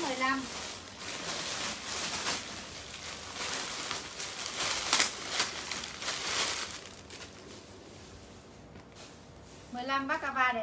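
A clear plastic garment bag crinkling and rustling as a piece of clothing is pulled out of it and handled. The noise is irregular and lasts about seven seconds before dying away.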